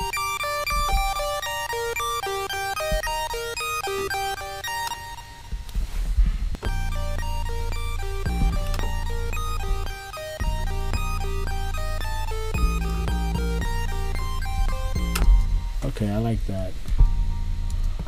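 Chip-tune synth lead run through an arpeggiator on a held G minor chord, stepping quickly through the chord's notes. About six seconds in, a deep 808 bass comes in underneath as the beat plays.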